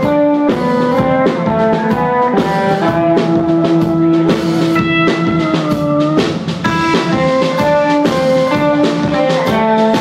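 Live rock band playing the opening of a song: electric guitars playing held chords and notes over a drum kit.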